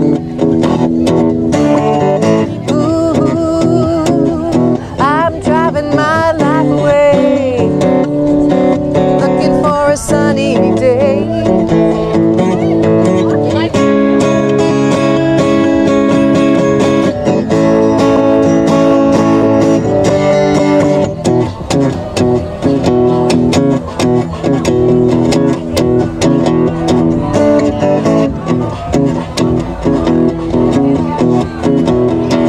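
Steel-string acoustic guitar strummed in a steady rhythm through an instrumental stretch of a country-rock song, with some wavering melodic notes over the chords in the first few seconds.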